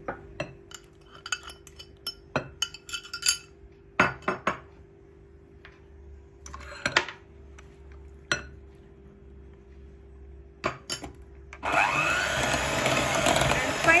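Scattered clicks and knocks of utensils against a glass mixing bowl as mashed banana goes into the creamed butter mixture. About twelve seconds in, an electric hand mixer starts beating the batter, running loudly with a whine that wavers in pitch.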